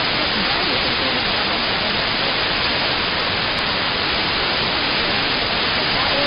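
Steady hiss of shortwave static from an RTL-SDR receiver in AM mode tuned to a distant broadcast station, with the station's voice faded down under the noise.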